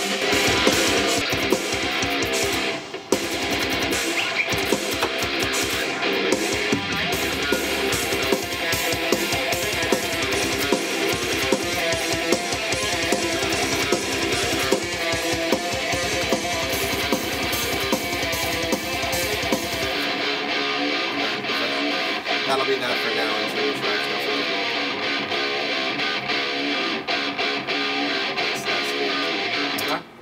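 Heavy metal music led by electric guitar riffing, with a fuller backing of low end and high cymbal-like hiss. About two-thirds of the way through, the backing drops out and the guitar carries on mostly alone.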